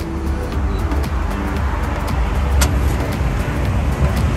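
Steady low rumble of road traffic beside a highway, with a single sharp click about two and a half seconds in.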